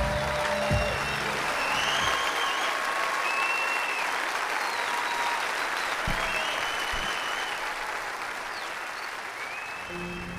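Large audience applauding and cheering, with scattered short whoops over the clapping. The last notes of a song end about two seconds in, and the applause eases slightly toward the end.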